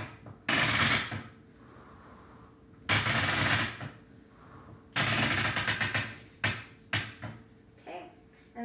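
Yarn spools spinning and rattling on their pegboard spindles as the warp is pulled forward in four tugs of about a second each, then a couple of short clicks near the end.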